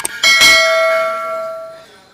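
A click, then a bell struck once, its ringing tone dying away over about a second and a half before stopping.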